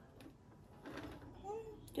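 Faint handling of a small potted succulent being set into a larger pot: a few light knocks and a soft rustle. A short, soft voice sound comes about one and a half seconds in.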